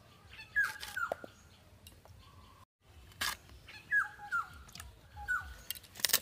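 An animal's short, high whining calls, each dropping quickly in pitch, about five in all, some in close pairs, among sharp clicks from a blade cutting raw green bananas.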